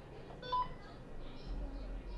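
A single short electronic beep about half a second in, over faint background noise.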